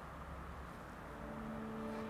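Quiet outdoor background with a faint, steady low rumble. Soft background music with held notes fades in about a second in.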